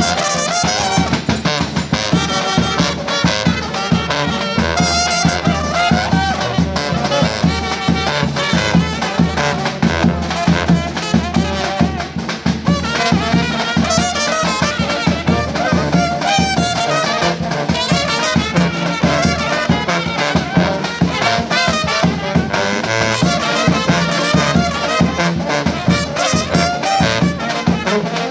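Serbian trubači brass band playing live: trumpets carrying a fast-moving melody over a tuba and a large bass drum beating steadily throughout.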